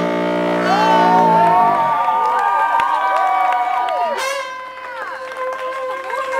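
Live brass-led funk band holding a low chord that dies away about two seconds in, then sustained notes ring on over a cheering crowd with whoops and shouts.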